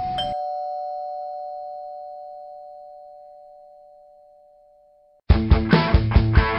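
A two-note ding-dong chime like a doorbell, a higher note then a lower one, ringing and fading slowly for about five seconds before it cuts off. Loud rock music with a heavy beat comes in near the end.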